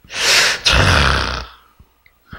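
A man's loud, breathy exhale or sigh close to the microphone, lasting about a second and a half, with the word '자' spoken into it.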